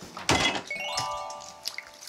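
A single thump about a quarter second in, followed by a chiming sound effect: several held bell-like tones that ring on and fade out over about a second.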